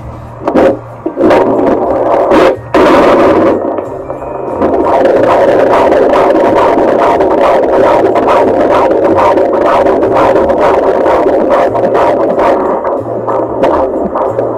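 Fetal Doppler monitor picking up a baby's heartbeat: irregular loud scraping bursts as the probe is moved over the belly for the first few seconds, then a loud, fast, rhythmic whooshing pulse of the fetal heartbeat from about four seconds in.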